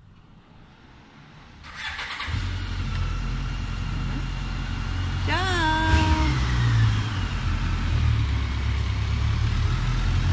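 A touring motorcycle's engine starts about two seconds in and then runs steadily at idle, a low rumble. A car drives past about six seconds in.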